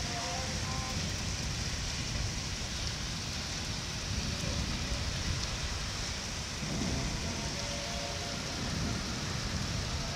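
Heavy rain pouring steadily in a summer rainstorm over flooded streets. A low rumble swells about two-thirds of the way in.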